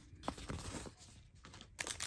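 Faint rustling and crinkling of the plastic film on a diamond painting canvas as it is handled, with a louder crinkle near the end.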